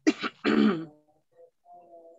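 A person clearing their throat: two harsh rasps within the first second.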